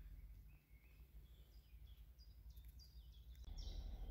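Faint birds chirping in the background over a low rumble, otherwise near silence; a louder outdoor noise floor comes in near the end.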